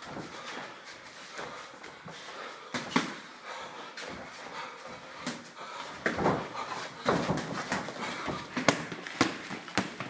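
Irregular dull thuds and slaps of boxing gloves and feet during a sparring exchange in the ring, with hard breathing between them.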